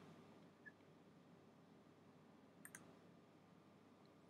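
Near silence: faint room tone, with a quick double click of a computer mouse a little past halfway.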